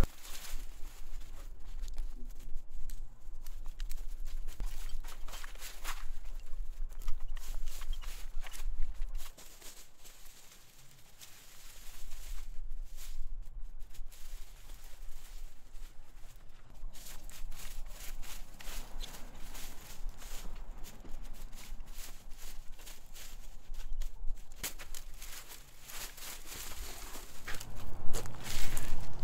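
Dry sticks and vines rustling and crackling irregularly as they are pulled up and dragged into a brush pile, over a low steady rumble that drops out for a couple of seconds near the middle.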